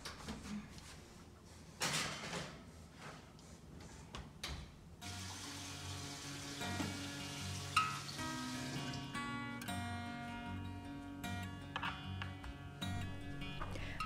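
Soft acoustic guitar background music, coming in clearly about five seconds in; before that, a few short bursts of noise.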